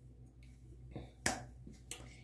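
Two sharp snaps made by hand, about two-thirds of a second apart, the first louder.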